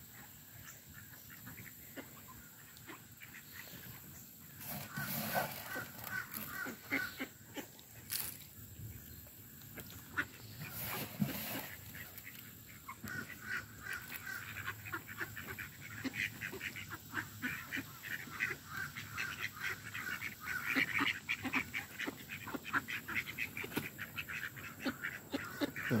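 Ducks and Canada geese calling while they feed: scattered honks and quacks, coming quicker and denser in the second half.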